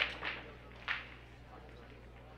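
Sharp clacks of pool balls striking each other, from play on nearby tables: one at the very start and another about a second in, each dying away quickly over the hall's low hum.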